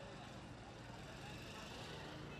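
Steady background noise of a street with traffic, low in level.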